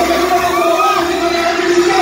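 A man's voice amplified through a microphone and PA over backing music, with a large crowd cheering and calling out in high voices.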